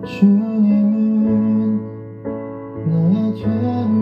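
A male voice singing a slow worship song over keyboard chords: a long held note in the first two seconds, then a second sung phrase near the end.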